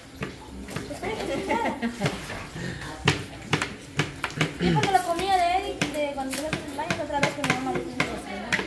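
Kitchen knives chopping carrots on cutting boards: irregular sharp taps of the blades on the boards, under people talking.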